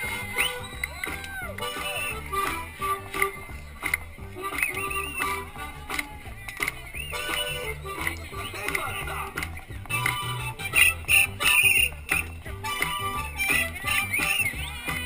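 Music with a steady, pulsing bass beat, with voices over it.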